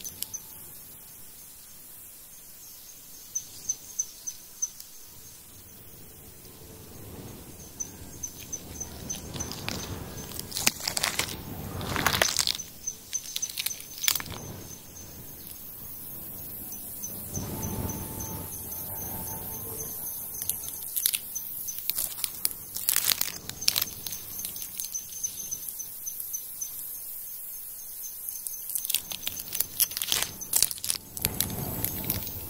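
Outdoor ambience: an insect's high, pulsing trill runs through most of it, with several louder bursts of noise around the middle and near the end.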